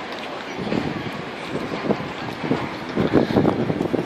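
Wind buffeting the microphone in irregular gusts that grow stronger toward the end, over a steady outdoor background hiss.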